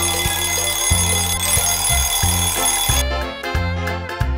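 Show jingle: an alarm clock bell ringing over a bass line, stopping about three seconds in, followed by a few short plucked musical notes.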